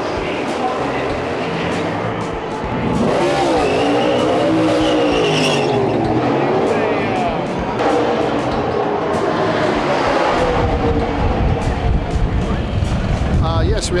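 NASCAR stock cars running on the track, their engine note rising and falling as they pass, with a heavier low rumble in the last few seconds.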